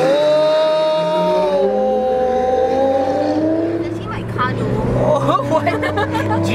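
Lamborghini Gallardo's V10 engine revved hard, its note held high for about a second and a half, then falling away and rising again as the car pulls off.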